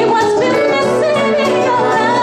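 A woman singing live into a microphone, backed by acoustic guitar and violin; her voice slides up and down in pitch through held notes.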